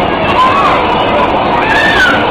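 Loud, steady din of a bumper-car rink, with riders' voices shouting and whooping, rising and falling in pitch over it.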